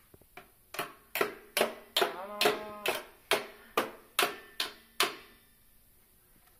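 A toddler beating a small plastic toy drum with a drumstick: about a dozen steady strikes at roughly two and a half a second, stopping about five seconds in.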